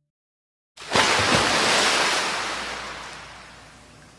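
After a moment of silence, a rush of noise like breaking surf starts abruptly and slowly fades away.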